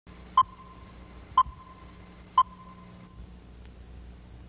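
Three short, high electronic beeps evenly spaced one second apart, each trailing off in a brief held tone, over a faint steady low hum.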